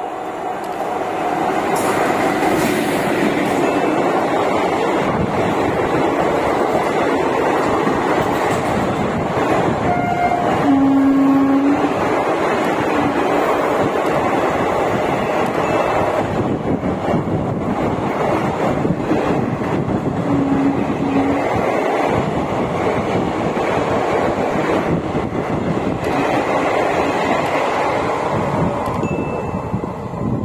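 Express train hauled by a WAP-4 electric locomotive running through a station at high speed without stopping: a loud, steady rush of coaches and wheels on rail that builds over the first couple of seconds and eases near the end. A brief low tone sounds about eleven seconds in and again about twenty-one seconds in.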